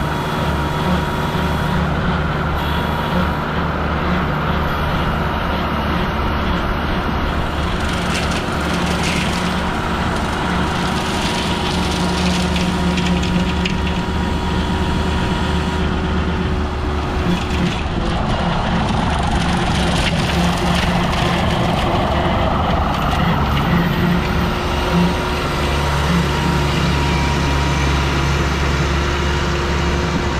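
New Holland T2420 compact tractor's diesel engine running steadily under load, driving a rear rotary mower whose blades grind through a pile of cut berry vines. A rougher, noisier cutting sound comes and goes through the middle.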